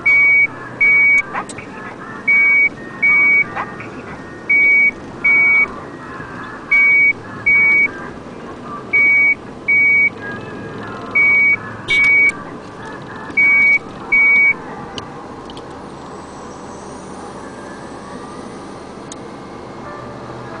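Wheel loader's reversing alarm: high beeps in pairs, seven pairs about two seconds apart, stopping about three-quarters of the way through. A steady machine engine runs underneath.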